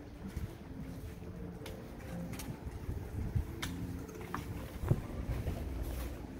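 Handheld camera handling noise while walking: a low rumble with a few scattered sharp clicks.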